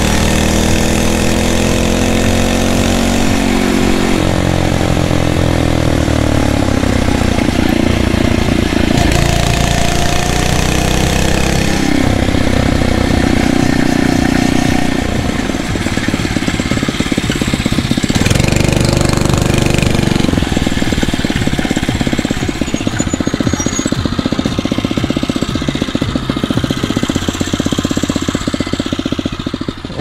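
The 79cc single-cylinder four-stroke engine of a Phatmoto Rover motorized bicycle running while ridden, its pitch falling and rising with the throttle as the bike slows and speeds up. In the last several seconds it drops back to a lower, pulsing idle, hot from the ride.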